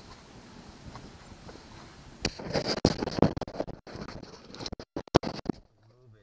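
Hard plastic parts of a ride-on toy being handled as the seat is freed: faint background at first, then about three seconds of loud, irregular knocks, rattles and rustling that cut out briefly several times.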